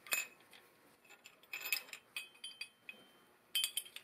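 A few faint, short metallic clinks of a hand tool against the engine's metal parts, in small clusters about a second apart, the last near the end.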